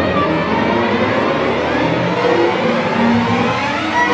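Student string orchestra playing a loud, dense passage, violins and cellos together in full sound.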